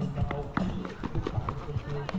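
Irregular sharp knocks of a basketball bouncing and sneakers stepping on asphalt during play, under background voices.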